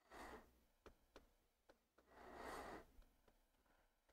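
Faint curling-rink ambience: scattered light knocks and clicks with two short rushes of noise, one at the start and a longer one about two seconds in.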